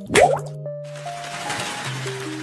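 Animated logo sting: a cartoon water-drop plop, a quick upward blip about a quarter second in and the loudest sound, over held synthesizer notes, followed by a soft hiss under the music.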